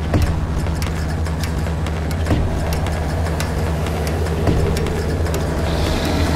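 Horror-trailer sound design under title cards: a steady low rumbling drone with scattered crackling ticks, struck by a dull hit about every two seconds.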